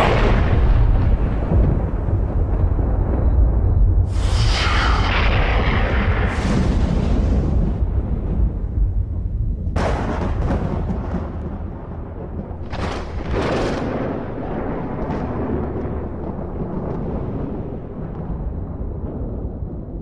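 Thunder and lightning sound effect: a continuous deep rumble with louder crackling blasts about 4, 10 and 13 seconds in, slowly dying away.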